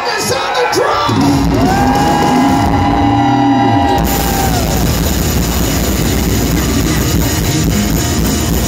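Live rock band: the singer holds one long yelled note, and about four seconds in the full band crashes in with drums, cymbals and electric guitar.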